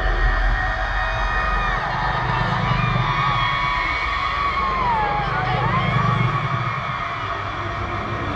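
Several women wailing and crying out together in anguish, their voices wavering and gliding in pitch, one dipping and rising again about five seconds in, over a continuous low droning rumble.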